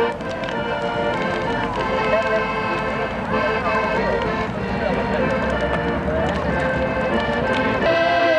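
Piano accordion music played outdoors, partly drowned by a crowd's voices talking and calling out, over a steady rumbling noise. The accordion stands out clearly again near the end.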